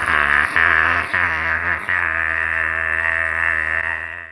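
A man's long, drawn-out shouted "Naaah", held on one pitch for about four and a half seconds and stopping just after the end.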